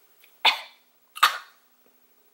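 A girl coughing twice, two short sharp coughs about three-quarters of a second apart.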